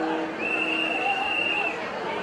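Crowd hubbub with voices, and a single long, steady high-pitched tone that starts about half a second in and holds for over a second.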